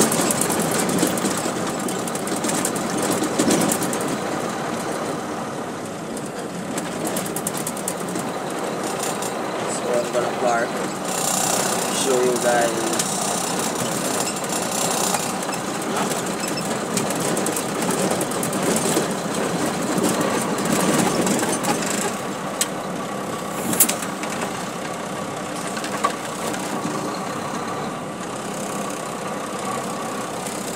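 Truck cab interior while driving: the engine running under steady road noise, with frequent small rattles and knocks from the cab and one sharp knock about 24 seconds in. A person's voice is heard briefly around 10 to 13 seconds in.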